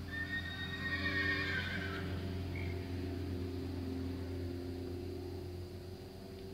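A horse whinnying once, a high wavering call of about two seconds at the start, over a steady low hum.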